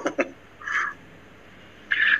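A man's speech trails off at the start, a brief voice sound comes about two thirds of a second in, then there is only faint background hum over a call connection until speech resumes right at the end.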